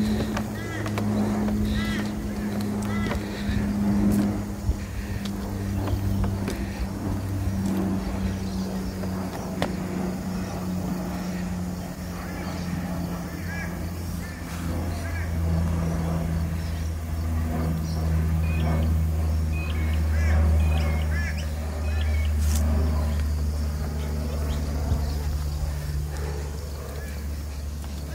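A motor running steadily, its hum drifting slowly in pitch, with short bird calls near the start and again later on.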